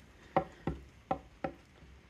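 Four light taps about a third of a second apart, a hand tool tapping on the carved wooden board.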